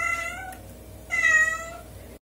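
A cat meowing twice, the second meow starting about a second after the first and a little louder.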